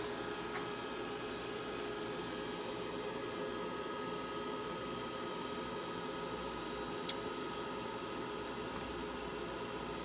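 Steady fan noise with a faint steady whine from the DragonMint T1 bitcoin ASIC miner's cooling fans, running at about 45% speed inside a soundproofed enclosure. A single sharp click about seven seconds in.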